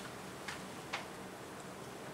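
Two faint, short clicks about half a second apart, the second the louder, over quiet room tone with a low steady hum.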